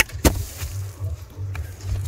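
Aviation snips cutting through a PVC window-abutment profile: a sharp crack at the start and a second one about a quarter second later. The plastic snaps rather than cutting cleanly, a sign of cutting from the wrong side of the profile.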